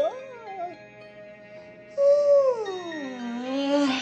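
A drawn-out voice-like call with smooth pitch glides: a short falling one at the start, then a longer one from about halfway that slides down and back up, over steady soft background music.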